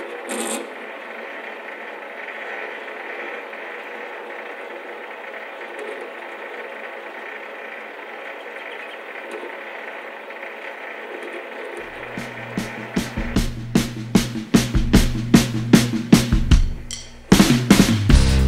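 MX-210V variable-speed mini lathe running steadily while a lead is turned on the end of a small rod, ready for the die. About two-thirds of the way in, rock music with drums comes in and grows louder.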